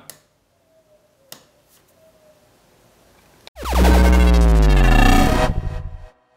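Faint room tone with a single click, then about three and a half seconds in a loud electronic outro sting: a synthesizer sweep whose stacked tones fall in pitch for about two seconds, then stutters and cuts off.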